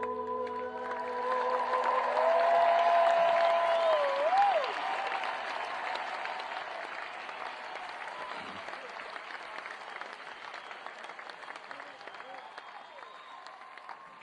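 Concert audience applauding and cheering as a live rock song ends. The band's last held notes fade in the first two seconds, and a high held note wavers and drops away about four and a half seconds in. The applause is loudest in the first few seconds, then gradually dies down.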